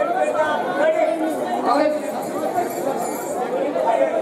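Several voices talking over one another, with crowd chatter around them.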